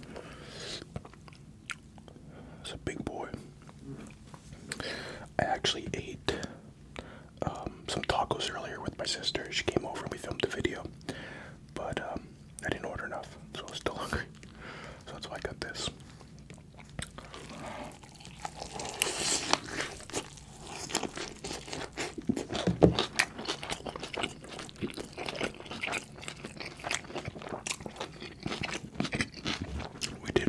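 Close-miked eating of a bacon cheeseburger: bites and wet chewing, with many short mouth clicks and crunches in irregular bursts that grow louder past the middle.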